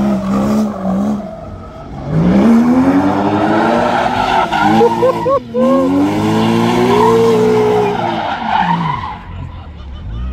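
Porsche Boxster doing a burnout and donuts: the engine revs hard with the rear tires spinning and squealing on the pavement. The revs drop about a second and a half in, climb sharply from about two seconds, break briefly around the middle, and fall away near the end.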